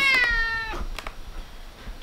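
Domestic cat meowing once: a long call that falls in pitch and ends under a second in, followed by a faint click.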